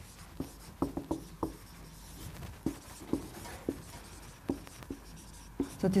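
Marker writing on a whiteboard: a dozen or so short, irregularly spaced strokes and taps as symbols are drawn.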